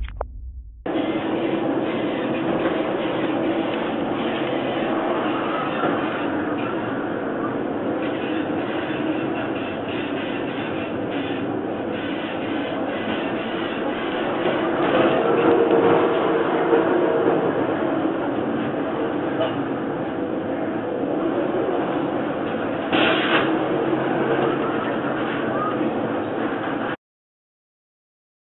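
Storm at sea: steady wind and water noise around a ship in heavy waves, starting about a second in, heard with a muffled, dull quality.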